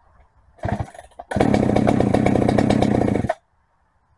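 Holzfforma 395XP two-stroke chainsaw engine firing briefly, then running fast for about two seconds before cutting off suddenly.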